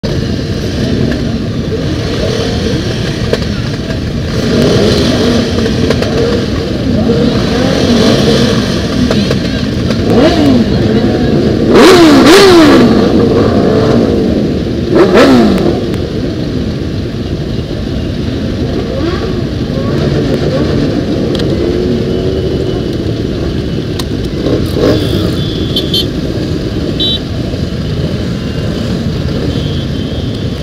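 A crowd of motorcycle engines idling together, with several bikes revving up and down; the loudest revs come twice near the middle.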